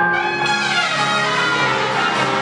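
Trumpet playing a melody live over a small band, with the trumpet line sliding downward in pitch about half a second in.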